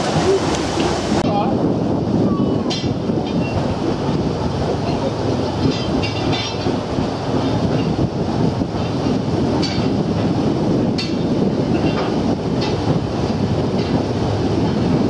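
Paddle steamer under way: a loud, steady churning noise from its paddle wheels and engine, with a few faint sharp knocks.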